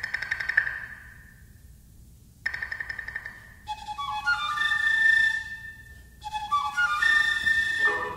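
Contemporary chamber music played live: two short runs of quick repeated high notes that fade away, with a near-silent pause between, then a flute entering about four seconds in with held high notes and short rising figures over softer ensemble sounds.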